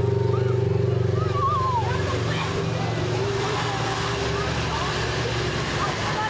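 Polaris RZR side-by-side's engine running at low speed as it rolls past, a low, pulsing note that fades about two seconds in. A steady hiss from the wet street and scattered voices follow.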